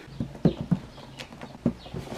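Light, irregular knocks and taps of a cardboard laptop box being handled and set down on a hard surface, about half a dozen in two seconds.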